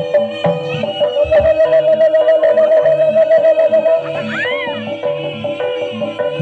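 Live Javanese jaranan accompaniment: steady drum strokes under a held, wavering melody tone. About four seconds in, a short high call rises and falls over the music.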